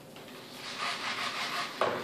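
Small servos in an RC glider whirring as the receiver's gyro stabilizer moves the control surfaces while the plane is tilted by hand. The sound wavers in level as the servos correct.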